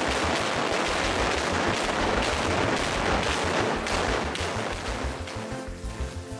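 Drill-and-blast round firing in a rock tunnel face behind tyre blast mats: a rapid, dense run of detonations and crashing rock lasting about five seconds, dying away near the end. Background music plays underneath.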